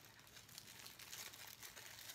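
Faint, irregular crinkling of a clear plastic cellophane wrapper as hands work it off a bath bomb.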